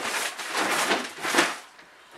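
Empty cardboard box being lifted and tilted, its cardboard rustling and scraping for about a second and a half before it goes quieter.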